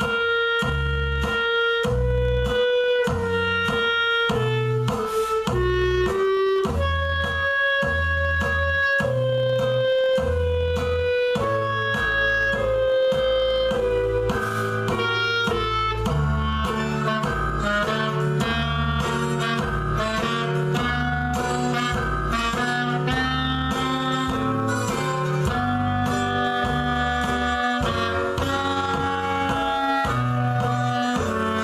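Clarinet playing a melody over an accompaniment with a regular low bass pulse. The line moves through held notes at first, then becomes busier and faster in the second half.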